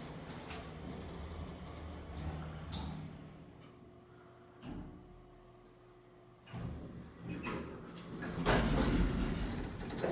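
A circa-1977 Otis hydraulic passenger elevator running with a low hum, then quieting and coming to a stop with a brief knock about halfway through. Over the last few seconds its doors slide open, the loudest part.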